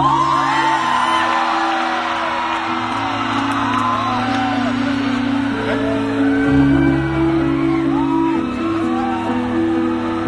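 A live band on stage playing slow, sustained chords on keyboard, changing every second or two. Over it, audience members whoop and shout with short rising-and-falling cries.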